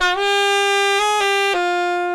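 Saxophone playing a short grace-note phrase: a held note, a quick flick up to the note above and back about a second in, then a step down to a lower note that is held and fades.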